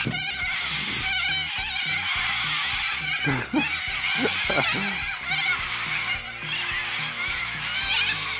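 A large flock of white cockatoos screeching together: a dense, unbroken chorus of harsh, overlapping calls.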